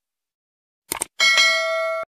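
Subscribe-animation sound effects: two quick mouse clicks about a second in, then a bell chime that rings for most of a second, fading slightly before it cuts off abruptly.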